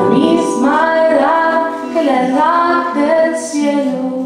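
A woman singing the last phrase of a song over acoustic guitar accompaniment; the final sung note ends near the end.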